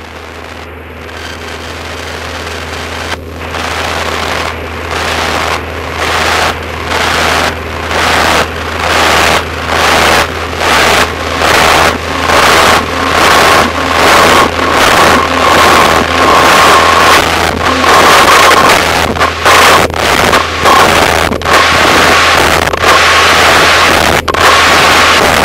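Loud hissing static in a light aircraft's headset, swelling steadily and, a few seconds in, pulsing in and out about one and a half times a second, with a steady high tone joining it midway. It comes with an in-flight electrical failure that took out the radios. Underneath, the aircraft engine's steady low drone.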